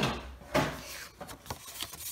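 Cardstock being slid and handled on a craft mat: a sudden papery swish at the start, another about half a second later, then a few small taps.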